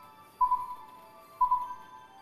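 Quiz-show answer timer beeping once a second: short electronic beeps at one pitch, two of them, counting down the last seconds to answer.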